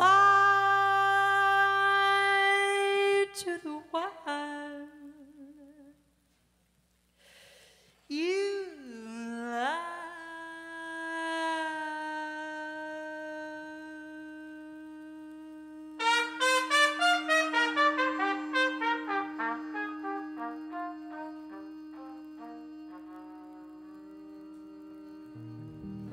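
Live jazz combo with trumpet closing a tune: a long held note that breaks off, a brief pause, then a note that bends up and down and settles into a long sustained tone. A quick run of ringing notes ripples over the held tone and fades.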